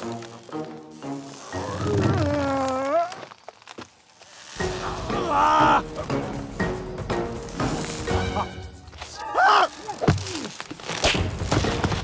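Cartoon soundtrack: background music with comic sound effects, including wavering, sliding wordless cries about two, five and nine seconds in, and a few thuds. The music drops out briefly around four seconds in.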